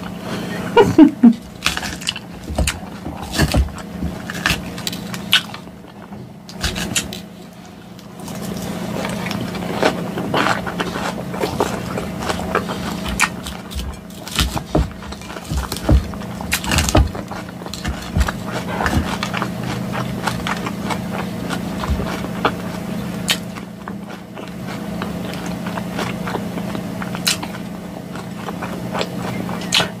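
Close-miked eating of a lettuce salad: irregular crunching and wet chewing, with a fork scraping and clicking against a glass bowl. A steady low hum runs underneath.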